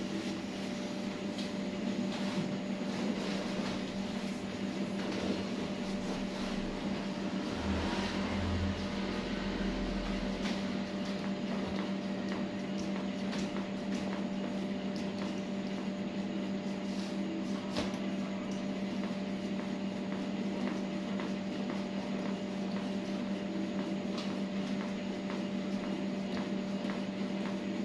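A steady mechanical hum with an even hiss, like a room appliance running, with a few faint clicks and a short low rumble about eight to ten seconds in.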